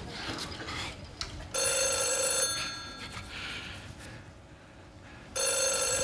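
A telephone ringing twice, about four seconds apart; each ring lasts about a second and has a fading tail.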